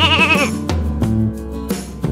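Upbeat electronic dance background music with a steady beat and sustained bass notes, opened by a short wavering, warbling tone in the first half-second.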